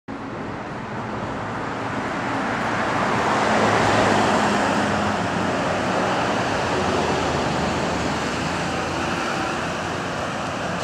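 Street traffic noise: a passing car's tyre and engine sound swells to its loudest about four seconds in, then eases away into a steady traffic hum.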